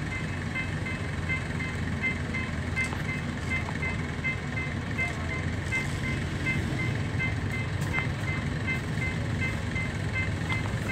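Railway level-crossing warning alarm beeping rapidly and steadily, the signal that a train is approaching, over a continuous low rumble.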